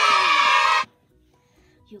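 A child's voice giving a loud, wavering shout that stops abruptly under a second in, followed by near quiet.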